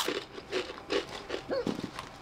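Kettle-cooked potato chips being chewed: a string of short, irregular crunches.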